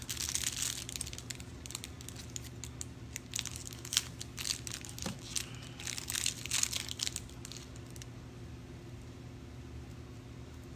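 Small plastic jewelry packages crinkling and tearing as they are worked open by hand, an irregular rustle with sharp crackles that dies down about eight seconds in.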